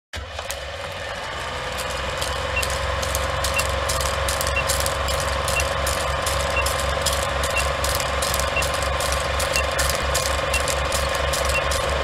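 Old film-projector clatter sound effect: a fast, steady run of mechanical clicks over a hum, growing gradually louder, with a faint short high pip once a second as a film-leader countdown runs.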